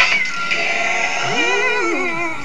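Recorded pop/R&B song playing. In the second half, a voice slides up into a held high note and then glides back down.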